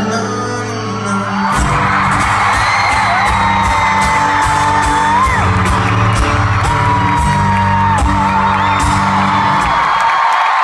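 Live amplified acoustic guitar chords with singing, over a crowd screaming and cheering as the song ends. The guitar stops near the end.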